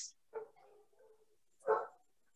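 A dog barking in the background of the call, a faint short bark early on and a louder single bark near the end.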